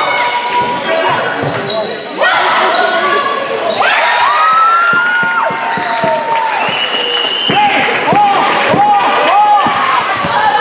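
Basketball shoes squeaking on a hardwood gym floor in many short chirps as players cut and run, with a basketball bouncing.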